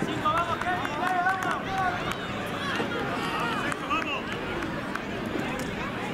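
Spectators and players shouting and calling over each other during a youth football match, several high-pitched calls rising and falling, over steady crowd chatter.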